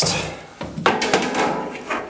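Steel drywall stud profile being knocked and shifted into position in its track: a few hollow metal knocks at the start and about a second in, followed by a rubbing scrape.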